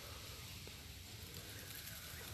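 Faint, steady background hum and hiss with no distinct event.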